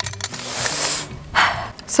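A few quick light clicks as the metal watermelon-slicer tongs are handled, then a breathy hiss, over quiet background music. A woman's voice starts a word near the end.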